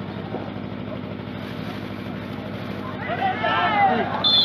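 Kabaddi spectators' voices under a steady low hum, the shouting swelling and getting louder about three seconds in as a raider is tackled.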